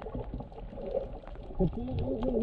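Muffled underwater ambience picked up by a camera below the surface: a low water rush with faint scattered clicks, and a brief muffled voice near the end.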